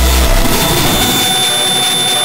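Frenchcore/hardtek electronic dance track in a breakdown with the kick drum gone: a short deep bass note opens, then a dense hissing synth wash with two thin, high held tones builds.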